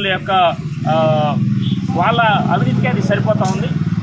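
A steady low engine drone of a motor vehicle running, heard under a man talking.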